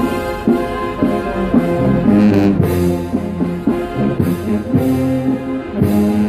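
Brass band playing a processional march: trombones and trumpets hold sustained chords that change every half second or so, with percussion strokes every couple of seconds.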